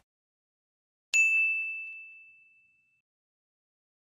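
A single bright bell-like ding about a second in. It is an end-screen sound effect, ringing on one clear tone and fading out over about a second and a half.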